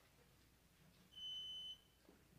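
A single electronic beep: one steady high-pitched tone about half a second long, starting about a second in, over near-silent room tone.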